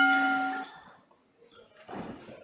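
Electronic chime of the parliament's voting system sounding as the electronic vote opens: one sustained bell-like tone that fades and stops about two-thirds of a second in.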